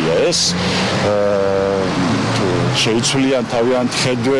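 A man speaking, who holds one long, level vowel for about a second near the middle.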